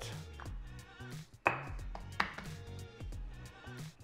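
Two sharp knocks on the kitchen countertop, under a second apart, as a wooden rolling pin and dough ball are handled for rolling out flatbread, over background music with a low bass line.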